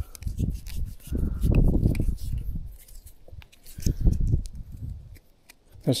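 Small hand-wound tape measure being reeled back into its round case: a run of small scattered clicks and rubbing, with two spells of low rumble from handling.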